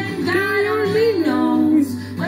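A pop song: a voice singing a melody, gliding between held notes, over a steady musical accompaniment.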